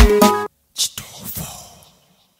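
Ugandan Afrobeat-style pop song with a heavy bass beat, stopping abruptly about half a second in. A brief whispered vocal follows and fades out.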